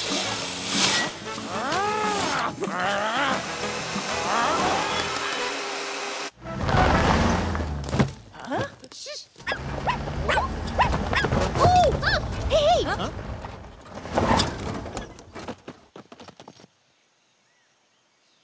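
Cartoon soundtrack music with sound effects and short gliding, wordless vocal sounds over it; it fades to near silence near the end.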